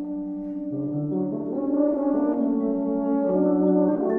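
Euphonium and tuba entering together on sustained notes, with marimba underneath, the chord building in loudness; the tuba's low line steps upward about a second in.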